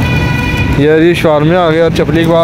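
A person's voice, drawn out and wavering in pitch, over a steady background din.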